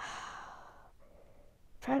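A woman's sigh: one breathy exhale that starts sharply and fades away over about a second. She starts speaking again near the end.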